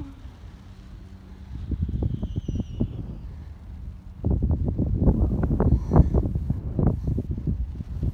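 Wind buffeting the microphone in rough low gusts, growing stronger about four seconds in.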